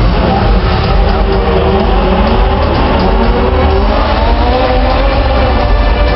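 Loud car engines running and revving, with music underneath.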